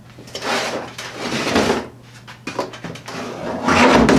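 Hard plastic Milwaukee Packout toolbox being handled on a workbench: a rubbing, scraping stretch of about a second and a half, then louder scraping and a low bump near the end as the box is lifted and tipped up on its side.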